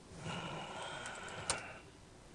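Typing on a computer keyboard: a short run of soft keystrokes with one sharper click about one and a half seconds in.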